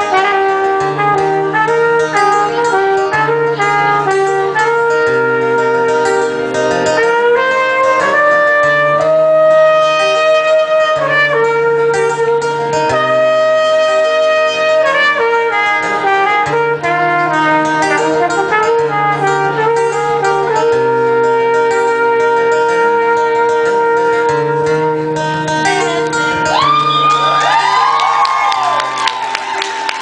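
Live trumpet solo, a melody of held notes over a repeating low accompaniment. Near the end the trumpet stops and whoops from the audience come in.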